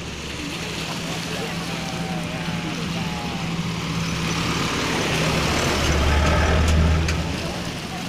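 A motor vehicle's engine hum, growing louder to a peak about six to seven seconds in and then fading as it passes.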